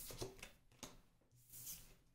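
Faint rustles and light clicks of a tarot card being picked up off a wooden tabletop.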